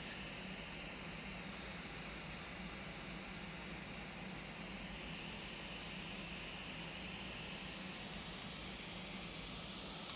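Steady background whir and hiss with a faint high-pitched whine running under it, unchanging and with no distinct events.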